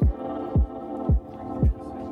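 Background music with a steady beat: a deep bass drum that drops in pitch, hitting about twice a second under sustained chords.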